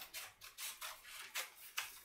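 Scissors snipping through paper in a quick run of short, crisp snips, about three or four a second.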